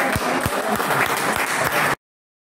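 Applause, with sharp hand claps close to the microphone, cutting off abruptly near the end.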